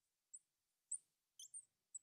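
Faint, short, high squeaks of a marker pen writing on the glass of a lightboard, a few strokes spread over the two seconds.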